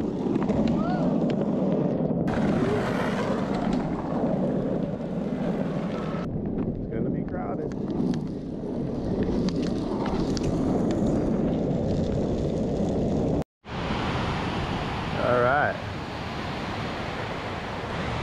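Wind buffeting an action camera's microphone while walking, a steady rumbling noise, with the wash of breaking ocean surf coming in over the last few seconds.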